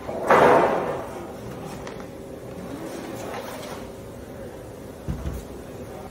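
Timber door-frame jamb handled in a plywood stand. There is a loud wooden knock and scrape just after the start that dies away within about half a second, then a short dull thump near the end.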